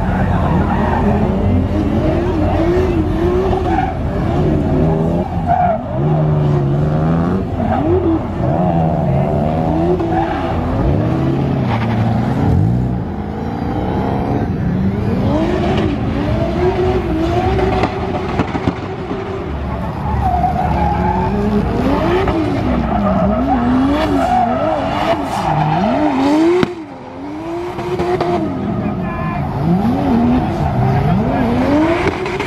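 Drift cars' engines revving up and down over and over as the cars slide, with tyres squealing. The loudness drops briefly a little before the end.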